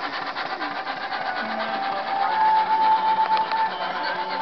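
A 4-inch scale Burrell steam traction engine running as it is driven off, its exhaust beating in a rapid, even chuff. A steady high tone comes in about halfway.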